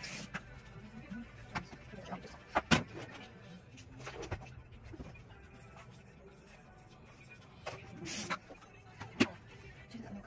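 Kitchen work sounds: scattered knocks and clicks of utensils and dishes over a low steady hum. The sharpest knocks come a little under three seconds in and just after nine seconds.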